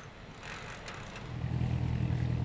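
A boat engine running with a low, steady hum that sets in about a second in, over faint clattering.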